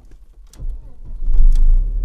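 VW Passat B5's 1.8-litre four-cylinder petrol engine (ADR) being started with the key: the starter cranks for under a second, the engine catches about a second and a half in with a short rev flare, the loudest moment, and settles into a steady idle. It starts quickly and easily, heard from inside the cabin.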